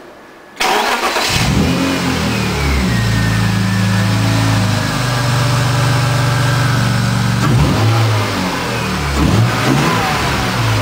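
BMW M52B28 2.8-litre inline-six, fitted with a Schrick intake manifold, starting up about half a second in and settling into a steady idle with a whine that slowly falls in pitch. Near the end the engine is blipped, revving up and back down twice.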